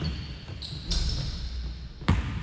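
A basketball bouncing on a hardwood gym floor during play, a few separate thuds that ring out in the large hall.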